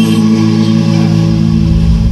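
Recorded dance music over loudspeakers, in a sparse passage: a held low chord, with a deep bass coming in about halfway through.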